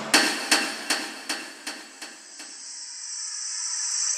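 Sound logo made of ringing metallic hammer strikes, about two or three a second, that fade away over the first two seconds or so. A high shimmering swell then rises toward the end.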